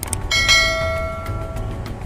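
A single bell chime, the sound effect of a subscribe-button animation, struck once about a third of a second in and ringing with many overtones as it dies away over about a second and a half.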